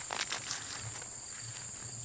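Crickets calling: one continuous high-pitched note, with a couple of faint clicks in the first moment.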